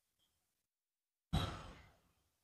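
A single heavy, breath-like exhale close to the microphone. It starts abruptly a little over a second in and fades within about half a second, with near silence before it.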